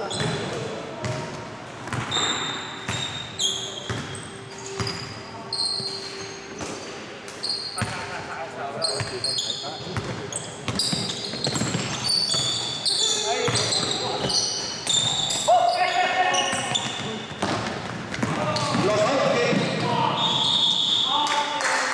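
Pickup basketball on a hardwood gym floor: a ball dribbled and bouncing, with many short, high sneaker squeaks from players cutting and stopping, in a large echoing hall. Players shout now and then, most clearly in the last few seconds.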